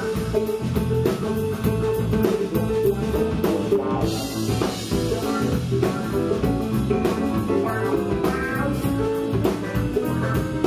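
Live blues band playing: electric guitar, bass guitar and drum kit, with a steady beat.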